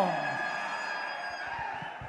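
A man's voice through a public address system trails off on a falling word in the first half-second, then low, steady background noise of a large hall with fading reverberation.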